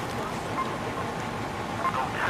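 Steady outdoor background rumble and hiss, with vehicle engines running.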